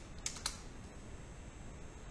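Three computer keyboard keystrokes, sharp clicks in quick succession within the first half second.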